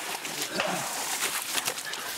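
Rustling and scuffling with many small crackles, as a soldier scrambles through a muddy ditch and long grass.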